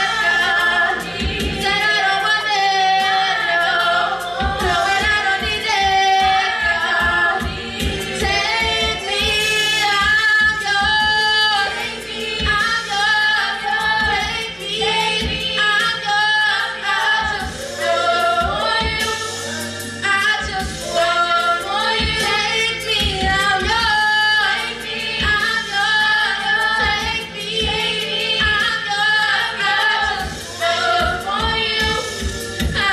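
A small group of women singing gospel in harmony into handheld microphones.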